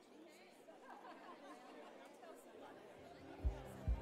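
Low murmur of many people chatting in a large hall. Near the end, music starts with a steady low beat of about two thumps a second.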